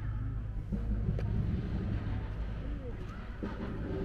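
Steady low rumble of distant city traffic, with faint voices of people nearby and a single click about a second in.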